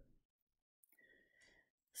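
Near silence: room tone, with a faint intake of breath in the second half just before speech resumes.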